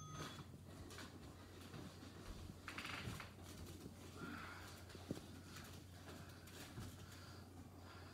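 Quiet room tone with a steady low hum and faint rustling as a person gets down onto an exercise mat, with a single soft knock about five seconds in.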